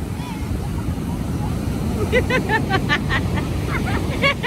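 Surf washing up the beach, with wind rumbling on the microphone. About halfway through, a high-pitched voice cuts in with a quick run of short cries.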